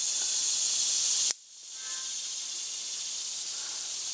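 A steady hiss broken by a single sharp metallic click about a second in, as the bolt assembly of an SKB Ithaca 900 semi-automatic shotgun is pulled back past its small locking fingers. The hiss drops out right after the click and slowly comes back.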